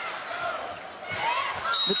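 Sounds of a volleyball rally on an arena court: ball contacts and sneaker squeaks over crowd noise that swells from about halfway through. A short high whistle tone sounds near the end.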